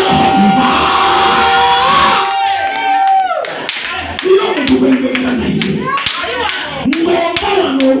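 A man singing through a microphone, holding one long note for about three seconds before it slides down, then singing on over steady hand clapping.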